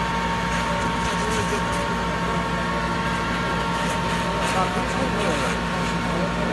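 Fire engine running steadily at the scene of a car fire, a constant drone with a steady hum. People's voices come and go over it.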